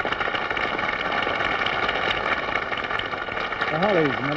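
Studio audience applauding as a song ends: a steady, dense clapping that starts suddenly and keeps going, with a man's voice starting over it near the end.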